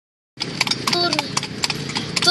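A carriage horse's hooves clip-clopping on pavement as a kalesa, a horse-drawn carriage, rolls along, a quick, uneven run of hoofbeats over the rumble of the wheels. The sound starts about a third of a second in.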